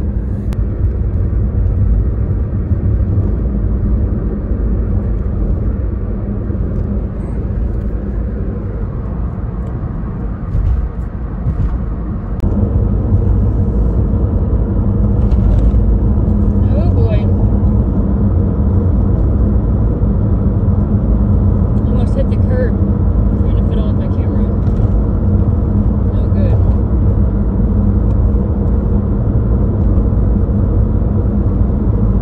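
Car engine running, heard from inside the cabin, its pitch holding fairly steady with no clear revving. It dips briefly about ten seconds in and runs a little louder after about twelve seconds.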